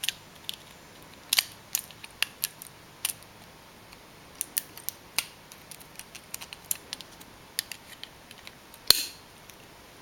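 Needle-nose pliers clicking against stainless steel wire as it is twisted and pulled snug around a plastic door-switch body. The clicks are sharp and irregular, and the loudest comes about a second before the end.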